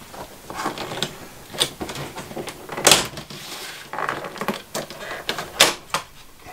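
Trim strip being pried off the front frame of a Norcold RV refrigerator: a string of sharp clicks and snaps as it pops free, the loudest about halfway through and another near the end.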